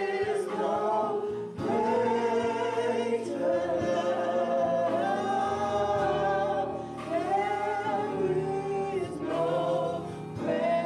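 A small gospel vocal group singing together through handheld microphones, in phrases of long held notes.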